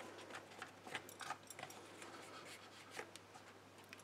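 Faint handling sounds of paper and card: a few light, scattered taps and rustles as a die-cut card llama is pressed down onto a card with tape.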